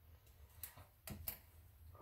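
A few faint light clicks from a small glass spice jar being handled, three of them between about half a second and a second and a half in, in a quiet room.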